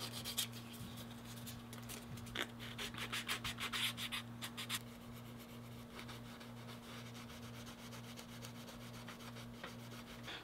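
Faint hand rubbing on the edge of a small piece of 3–4 oz natural veg-tan leather: 320-grit sandpaper, then a cloth burnishing the edge. Quick, even strokes about four or five a second come in a run in the first half, then the rubbing fades under a faint low steady hum.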